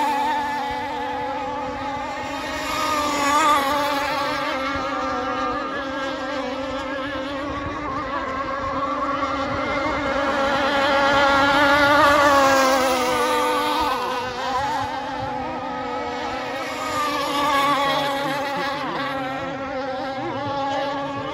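Several radio-controlled model racing hydroplanes running at full speed, their engines giving a high-revving, pitched note that wavers up and down as the boats work round the course. It swells loudest about twelve seconds in as boats pass closer.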